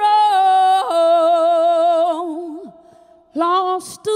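A woman singing solo without accompaniment, holding long notes with vibrato. She breaks off briefly about three seconds in, then sings one more short phrase.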